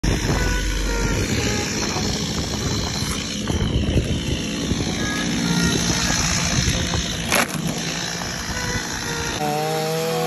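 Stihl two-stroke chainsaw engine running, a dense rough noise at a steady level. About nine and a half seconds in it cuts off abruptly and gives way to music with clear held notes.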